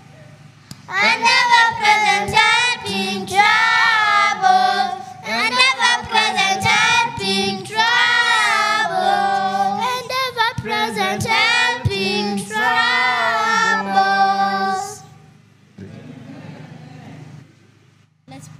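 Children singing a chorus together into microphones. The singing stops about three seconds before the end, leaving faint room sound.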